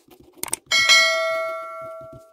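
A quick double click, then a single bell ding, the notification-bell sound effect of a subscribe-button animation, which rings out and fades over about a second and a half.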